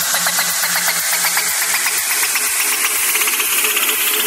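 House music from a DJ mix at a build-up: fast, evenly repeated drum hits under a sweep that rises in pitch.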